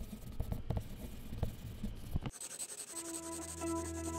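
Pen scratching on paper in quick, uneven strokes, the drawing sound of a sketched-logo animation. About two seconds in it gives way to a steady hiss, and musical notes begin near the end.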